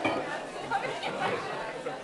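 Crowd chatter: many voices talking over one another in a room, with no music playing.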